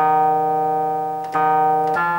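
Artisan Baroque synthesizer playing a bell-like chime patch: sustained chords, a new one at the start and another about a second and a half in.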